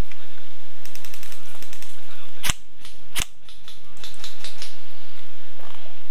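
Airsoft electric guns firing: a quick burst of rapid clicking shots about a second in, two loud sharp cracks about halfway through, then scattered single shots.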